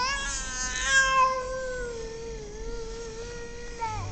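A baby crying: one long wail that rises at the start, then holds fairly steady with a slight waver for nearly four seconds.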